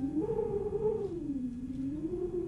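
Music: a single sustained tone that slides up, sinks slowly, then wavers gently in pitch, with no plucked notes under it.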